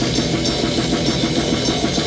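Live heavy metal band playing: a distorted electric guitar riff over rapid, steady drumming with cymbals on a rock drum kit.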